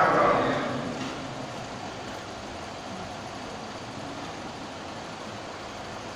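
An amplified man's voice dies away with hall echo in the first second. After that there is a steady, even hiss of room noise through the sound system.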